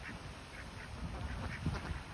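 Ducks quacking in short, scattered calls, a little louder near the end.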